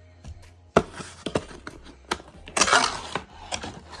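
Cardboard packaging being handled: a sharp knock a little under a second in, a few lighter clicks, then a short scraping rustle near the three-second mark as the box's cardboard inserts and flaps are moved.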